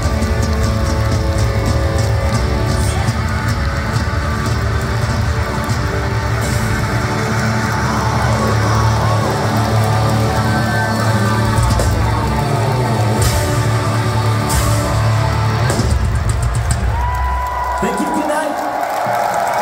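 Live rock band playing loud at full volume, with drums, bass, guitars and keyboards holding sustained chords, heard from within a concert crowd. The deepest bass drops away in the last couple of seconds.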